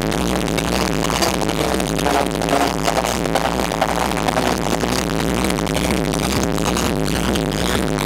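Electronic dance music with a steady beat, played loud over a nightclub sound system and heard from the dance floor.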